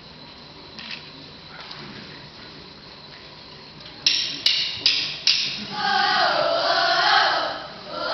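Four sharp knocks a little under half a second apart, then a group of fifth-grade boys starts singing together.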